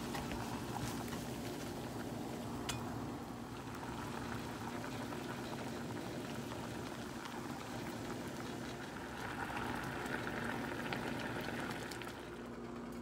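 Pot of vegetable broth boiling hard, a steady bubbling with a light click about three seconds in.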